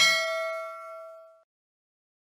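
A single bell-like ding sound effect, ringing out with several clear tones and fading away within about a second and a half.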